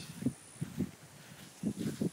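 A few soft footsteps on a grass lawn, as dull low thuds.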